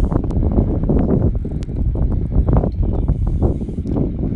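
Sailcloth of a bunched, tied-up headsail rustling and flapping close to the microphone in the breeze, with wind buffeting the microphone, as an uneven, fluttering noise.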